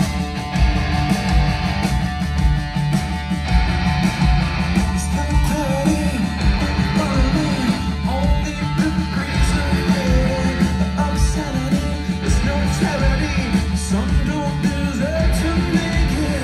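Live rock band playing loud: electric guitars, bass guitar and drums.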